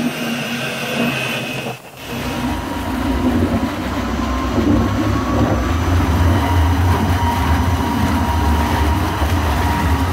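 Daniatech ProcessMaster 500L mixing vessel running steadily as it emulsifies starch into fresh cheese. About two seconds in the sound dips briefly. After that a louder low rumble and churning take over as the agitator swirls the liquid mix in the tank.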